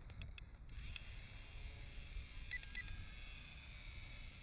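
Two short, high electronic beeps in quick succession about two and a half seconds in, over a steady low rumble of wind on the microphone, with a few faint clicks near the start.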